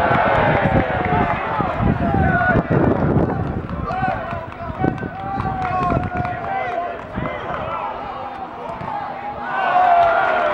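Shouting voices during open play at an outdoor football match, heard pitchside: a loud shout at the start, scattered calls in the middle, and another loud shout near the end.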